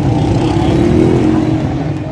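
Street traffic with a motor vehicle engine accelerating close by, its pitch rising over about a second and a half above a steady rumble of traffic.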